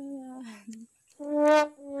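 Comic brass music sting in horn or trombone tone: a held note that slides down, a short gap, then a louder held note, with a third note starting near the end.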